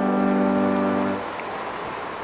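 Background keyboard music: a sustained chord held steady, then dropping away about a second in to a faint tail.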